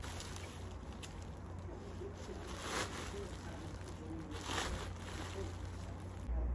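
Plastic wrapping of a large bale rustling as it is lifted and handled, with two louder rustles about midway, over a low steady rumble.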